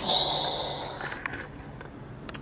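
A person's long breath drawn at the mouth, a rush of air that fades out over about a second, followed by a couple of faint clicks.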